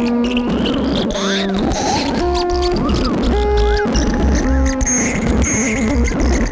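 Analog synthesizer jam: a sequence of short pitched synth notes that change pitch from note to note, each with a filter sweep up and back down, over a steady low bass.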